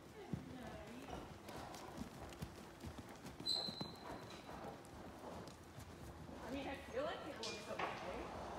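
Hoofbeats of a ridden horse moving over the sand footing of an arena, a run of soft, irregular thuds.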